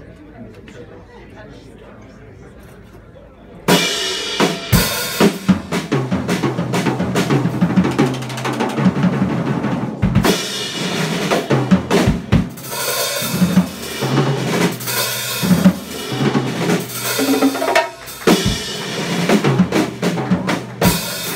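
A live band starts a piece about four seconds in with a sudden, loud entrance led by a busy drum kit, sustained pitched instruments playing underneath. Before that there are a few seconds of quiet crowd murmur.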